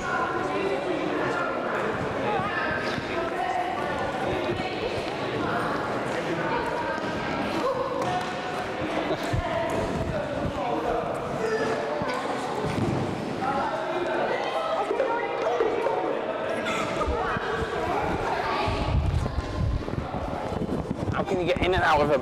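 Thuds of children's feet running and landing on a sports-hall floor and gym mats, with background chatter of children's voices.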